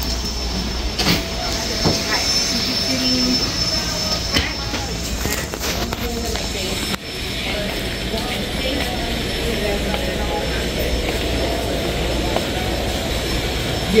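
Ambience inside a retail store: a steady low hum with faint background voices and a few light clicks and rustles. There is a brief drop about halfway through.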